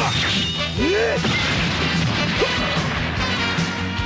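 Cartoon battle sound effects from an animated robot sword fight: several crashes and hits, with a few swooping tones, over background music.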